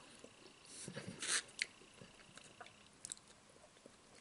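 Close-miked chewing and mouth sounds of a man eating, the loudest burst about a second in, with a few sharp clicks of a plastic fork in a foam bowl.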